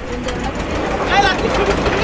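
Men's voices talking in the background, with one voice calling out loudly about a second in, over a low steady rumble.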